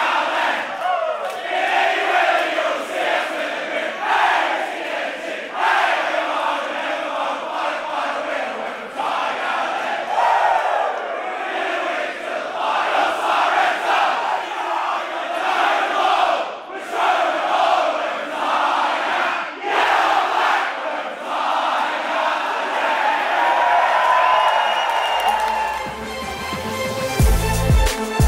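A packed room of football players and supporters singing the club song together at full voice, with shouts and cheers mixed in.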